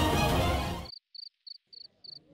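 Background music cuts off about a second in, and crickets take over, chirping at an even pace of about three short high chirps a second.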